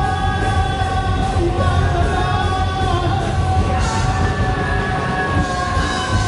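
Live heavy metal band playing with a singer, long held notes over steady drums and bass, as heard from within the audience.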